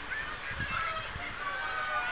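Car horn honking over the voices of a crowd, the longest honk coming in the second half.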